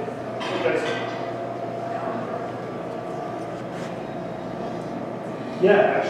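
Steady indoor background hum with a thin, steady tone running through it.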